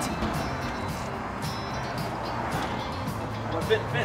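Background music under a steady outdoor hum, with a brief voice near the end.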